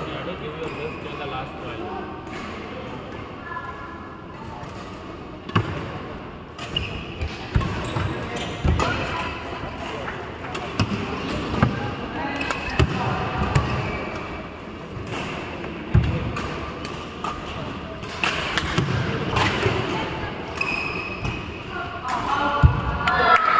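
Badminton rally: rackets striking the shuttlecock as sharp pops about a second apart, starting a few seconds in, over a steady murmur of voices in the hall.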